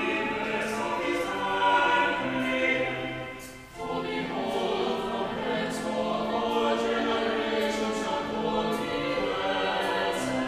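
A church choir singing, with a short break between phrases a little under four seconds in.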